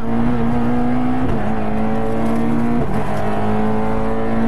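Fiat 600 Kit rally car's engine running hard at steady high revs, heard from inside the cabin, with two brief breaks in the note, about a second and a quarter in and near three seconds.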